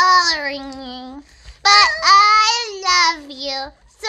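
A child's voice holding two long, wordless notes, each sliding down in pitch: the first lasts about a second, and the second, after a short break, about two seconds.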